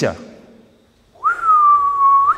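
A person whistling one long clear note. It begins a little over a second in with a quick rise, slides slowly down in pitch, and flicks upward briefly near the end.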